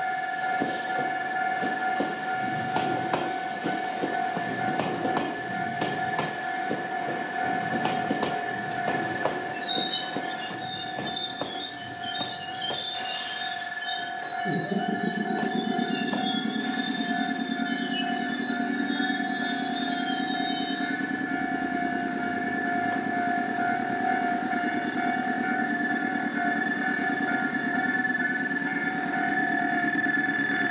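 A four-car Iyo Railway electric train arrives, wheels clacking over the rail joints. For about ten seconds midway the wheels and brakes squeal high as it slows. Partway through, a steady low running hum takes over, while a level crossing's warning alarm rings steadily throughout.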